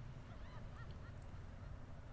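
A few faint, short bird calls in the first second or so, over a low steady background rumble.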